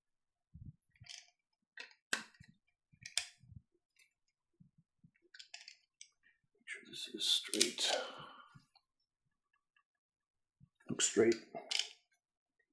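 Small metal tools and rifle parts being handled while the barrel retention screws are torqued. Scattered sharp clicks, a longer rattling clatter about seven seconds in, and another burst of clicks and knocks near the end.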